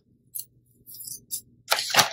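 Metal hair clips being unclipped and pulled out of curled hair: a few soft clicks and rustles, the loudest near the end.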